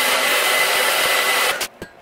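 Handheld hair dryer blowing steadily with a faint high whine, then cutting off suddenly about one and a half seconds in. It is being used to flatten the top of a lace front wig.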